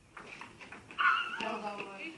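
Faint clicks of a table-tennis ball on bats and table, then about a second in a loud, drawn-out voiced cry from a young player that starts high and drops lower.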